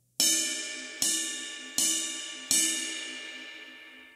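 Bell of a 22-inch ride cymbal struck four times with a drumstick, about three-quarters of a second apart, each strike ringing with a focused tone that slowly fades.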